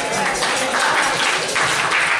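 Church congregation applauding: dense, steady hand clapping.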